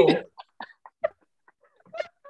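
A few short, separate bursts of laughter over a video call, spaced out with gaps between them.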